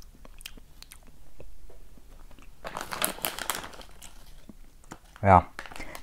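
Someone chewing a soft gummy candy, with small wet mouth clicks. About halfway through comes a short rustle of the plastic candy bag.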